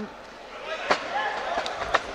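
Two sharp thuds about a second apart as two fighters grapple in a standing clinch against a mesh cage, with faint voices in the background.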